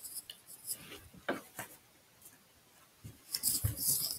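Light clicks and rattles of a small electronics assembly, a touchscreen display with circuit boards attached, being handled and set down on foam, with a short cluster of clatter near the end.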